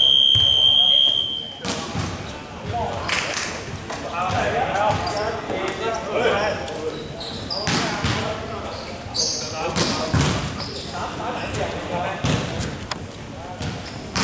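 Scoreboard buzzer sounding one loud, steady high tone that cuts off suddenly about one and a half seconds in. After it, players' voices and basketballs bouncing on the court echo in a large sports hall.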